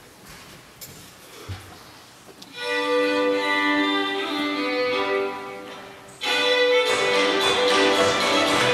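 Solo fiddle bowing a few long, held notes. About six seconds in, a fast fiddle reel starts loudly with the band accompanying.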